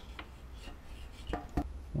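Faint rubbing with a few light knocks about a second and a half in, over a low steady hum.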